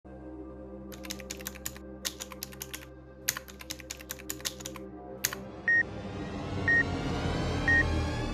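Computer keyboard typing sound effects in three quick runs over a low music drone, then a single click. Three short high beeps follow about a second apart as the music builds.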